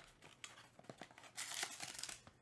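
Cardboard trading-card mini-box being opened and its foil-wrapped pack slid out, crinkling with small clicks, in a louder run of crinkles about halfway through.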